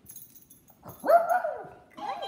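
Small dog giving one short pitched call, rising then falling, about a second in, as it comes through a hula hoop at a trick attempt.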